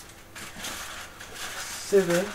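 Food sizzling in a frying pan, a hiss that swells about a third of a second in and dies away near the end.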